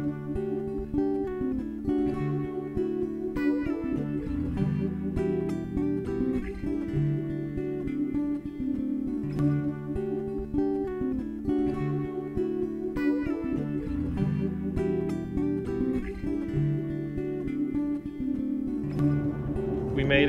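Guitar loop playing: a repeating picked pattern over held low notes.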